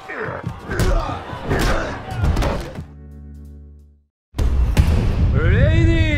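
Movie-trailer soundtrack: music with sharp punch impacts for about three seconds, then a low sustained tone that fades out into a brief silence. The music then comes back in loudly, with a voice-like line that rises and falls near the end.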